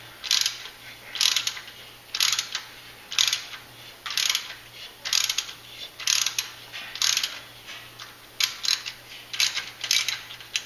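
A 1/8-inch NPT thread tap being worked back and forth in a drilled hole in a Duramax LLY's exhaust manifold: a short, rasping, clicking burst about once a second, one per stroke of the tap handle, as the threads are cut and cleaned of shavings.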